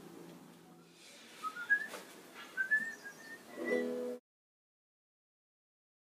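A few short, thin, whistled notes that rise in pitch, then a brief low pitched tone; the sound cuts off suddenly just after four seconds in.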